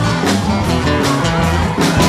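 Live band playing an instrumental passage between sung lines: strummed guitars over bass and a drum kit keeping a steady beat.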